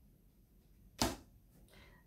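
Quiet room tone broken by a single short, sharp burst of noise about a second in.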